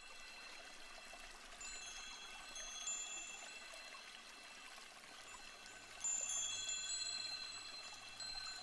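Faint, high chime tones ringing at scattered moments and overlapping. They grow louder about six seconds in.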